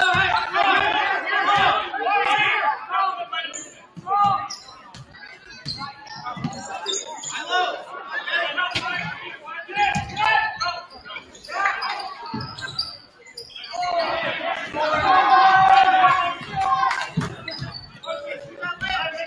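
Basketball dribbled on a hardwood gym floor, with short sharp bounces throughout. Over it, unclear voices of players and spectators call and shout, loudest at the start and again near the end.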